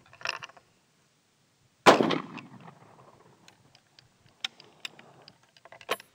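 A single rifle shot about two seconds in from a single-shot Trapdoor Springfield chambered in .30-40 Krag, sharp and then dying away. Near the end come a few small clicks as the breech is worked.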